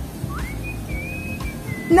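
A single high whistled note that slides up about half a second in, wavers slightly and holds for over a second, dipping a little just before the end.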